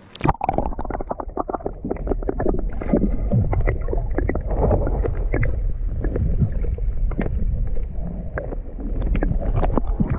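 GoPro action camera recording underwater: a sharp splash as it goes under, then muffled underwater rumble full of quick bubbling clicks.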